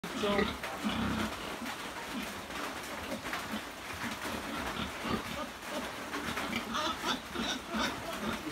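A pig drinking from a nipple drinker: irregular slurping and clicking at the drinker, with low pig sounds among it.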